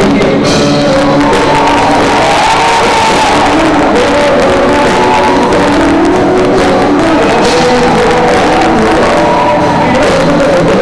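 A male vocalist sings into a microphone with a live band of electric guitar and drum kit, loud and unbroken in a large hall.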